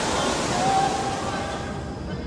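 Waterfall: a steady rush of falling water that thins out near the end.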